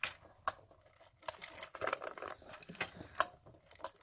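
Winding key of a 75-round AK drum magazine being turned to put tension on the feed spring, its ratchet giving a run of irregular clicks.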